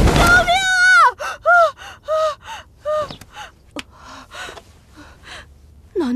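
A child's voice crying out for help over the noise of a fire that cuts off about a second in. Then come a quick run of short, pitched gasps and pants that fade into quieter breathing, a child waking in fright from a nightmare.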